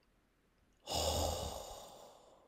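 An editing sound effect for the animated title card: a breathy whoosh with a low thud at its onset, about a second in, fading away over the next second and a half.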